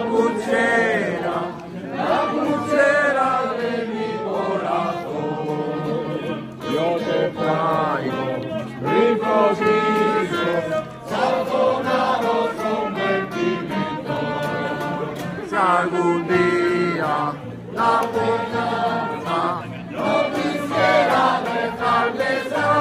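A mixed group of people singing a song together in unison, with an acoustic guitar strummed along.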